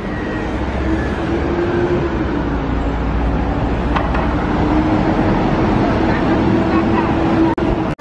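City street traffic: a vehicle engine drones steadily over a deep rumble as trucks pass close by.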